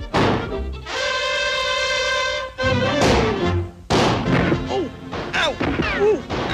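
Cartoon soundtrack: music with a long held note that bends downward, mixed with several sharp crash and whack sound effects, and falling glides near the end.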